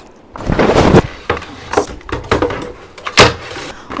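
Household objects being handled and set down: a loud scraping rustle about half a second in, scattered light knocks and clicks, and a sharp knock a little after three seconds.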